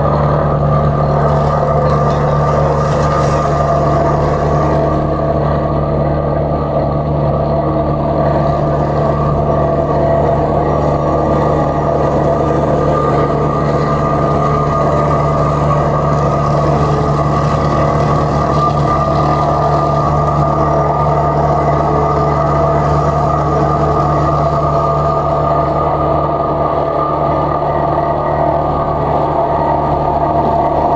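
Diesel engine of a remote-controlled padfoot (sheepsfoot) trench roller running steadily as the machine drives over loose dirt to compact it.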